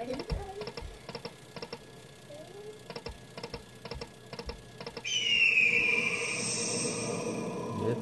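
Aristocrat Buffalo slot machine spinning its reels during the free-games bonus, with a light ticking in small regular groups; about five seconds in, a louder electronic tone sounds for about three seconds, gliding slightly down, as the spin lands a win.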